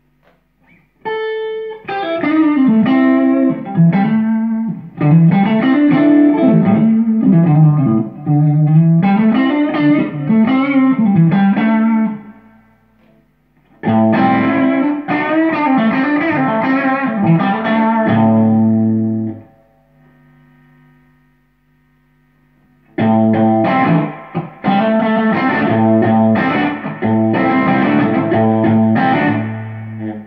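Suhr Classic electric guitar played through a Dr Z Maz 8 valve amp head, in three phrases of chords with a moving bass line. The playing pauses briefly about twelve seconds in and again around twenty seconds, with a faint ring left over in the second gap.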